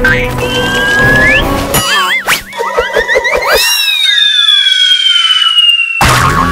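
Cartoon background music with whistle-like sliding sound effects. The low end of the music drops out about two seconds in, and a long, slowly falling whistle tone runs through the last two seconds.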